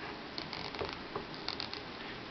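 A few faint plastic clicks and creaks from the wrist joint of a Hasbro Iron Man 2 action figure being twisted by hand; the joint is stiff.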